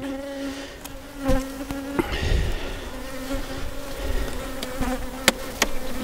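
Honeybees buzzing steadily around an open hive, a continuous hum. A few sharp knocks sound over it as the wooden hive boxes and frames are handled.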